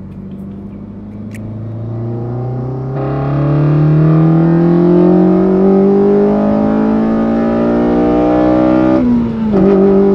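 A 2.0-litre four-cylinder engine in an 8th-generation Honda Civic Si, heard from inside the cabin, pulling hard through a gear, its pitch and loudness climbing steadily. About nine seconds in, the revs drop at an upshift and then hold steady.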